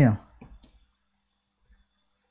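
A man's voice finishes a short question, followed by a few faint clicks and then near silence.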